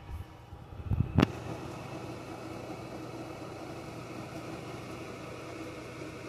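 A few low bumps and a sharp click about a second in, then a steady mechanical hum that carries on.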